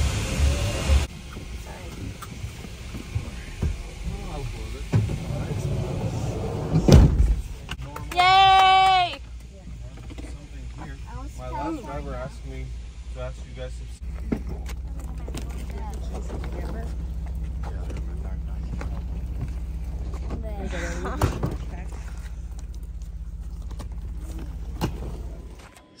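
Luggage and hard instrument cases being loaded into a van at an airport curb, with voices around, a heavy thud about seven seconds in and a brief loud warbling tone just after. In the second half a vehicle engine idles with a steady low rumble.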